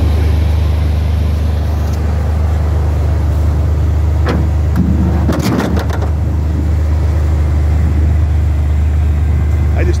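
1986 Maserati 4x4 concept car's engine idling with a steady low drone, with a few sharp clicks or knocks about four to six seconds in.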